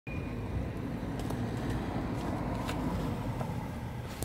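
Steady low rumble of road traffic, with a few faint ticks.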